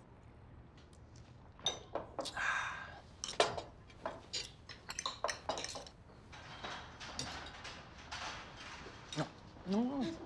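Cutlery and dishes clinking and knocking on a dinner table in a rapid series of sharp clicks, one ringing briefly. Near the end a person's voice cries out.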